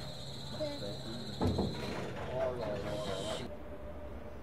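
Standing DB Class 103 electric locomotive humming at rest, with a steady high-pitched whine over a low hum, and a single low thump about one and a half seconds in. The whine and hum cut off suddenly near the end, leaving quieter background.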